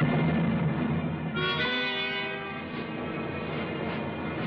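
Orchestral horror trailer score with strings playing held chords: a louder low chord comes in at the start, and a higher sustained chord enters about a second and a half in.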